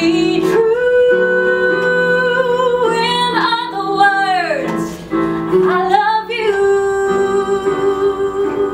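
A woman singing wordless held notes with a wavering vibrato, over sustained accompaniment chords.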